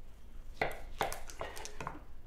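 Kitchen knife cutting through a black pudding on a wooden chopping board, with about four short sharp knocks and scrapes as the blade works through.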